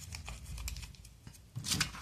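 A small slip of paper being picked up and folded by hand. It gives light rustles, then a louder crisp crinkle near the end.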